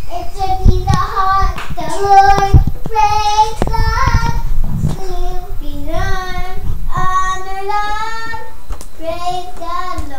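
A young girl singing a praise song, with drawn-out notes that slide up and down in pitch. A few short low thumps sound underneath.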